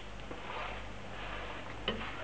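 Pancake sizzling in hot oil in a frying pan as a slotted metal spatula presses it down, a steady hiss with one sharp click just before the end.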